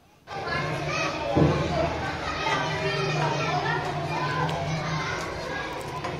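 Many children's voices talking and calling out at once, a dense babble that starts abruptly about a third of a second in, with a steady low hum underneath.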